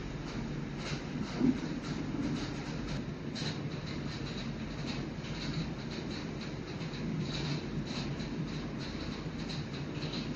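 Steady low rumbling background noise with a faint hiss on top, unbroken throughout and without speech or music.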